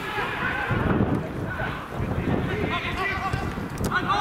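Players shouting calls to each other on a football pitch: short, rising and falling shouted voices without clear words, with a low rumble about a second in.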